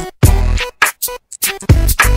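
Hip-hop backing music: a drum-machine beat with deep bass hits and short, chopped stop-start stabs, with no vocals yet.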